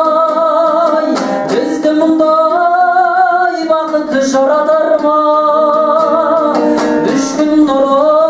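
A man singing in long held notes with vibrato while accompanying himself on a strummed dombra, the Kazakh two-stringed lute, with a few sharp strums cutting through the voice.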